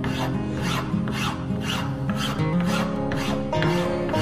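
Wood being shaped by hand with an abrasive tool, in even back-and-forth strokes about two a second, over acoustic guitar background music.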